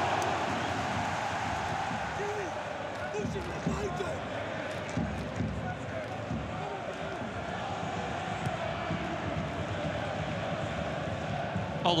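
Steady crowd noise from a packed football stadium, a broad din of many voices with scattered shouts and a few low thumps in the middle.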